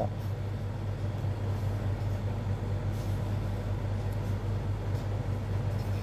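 A steady low hum of background noise that holds level and pitch without a break.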